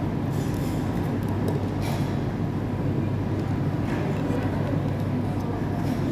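Food-court background din: a steady low rumble of crowd and ventilation, with a few brief clinks of tableware.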